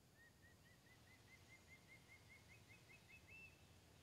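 A faint bird call: a run of short notes that quicken and climb slightly in pitch, ending with one higher note, over a low ambient hum.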